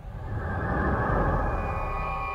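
Intro logo sting: a rising whoosh over a deep rumble swells up out of silence and settles into a held chord about one and a half seconds in.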